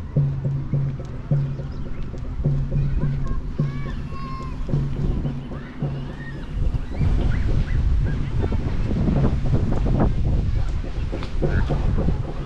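Outdoor park ambience: a low, distant bass beat from music pulses steadily, with faint voices. From about seven seconds in, wind buffets the microphone and a low rumble covers the beat.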